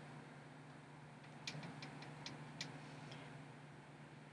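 Near-silent room tone with a steady low hum, and about six faint light clicks around the middle from a small eyeshadow pan being handled.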